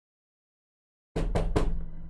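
A quick run of knocks with a heavy low boom, starting suddenly about a second in, like knocking on a door or desk picked up close by a microphone.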